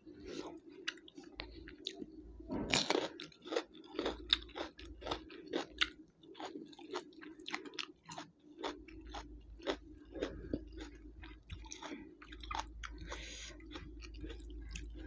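Close-up chewing of a mouthful of rice and fish curry eaten by hand: wet, quick, irregular mouth clicks and smacks, loudest about three seconds in, over a faint steady low hum.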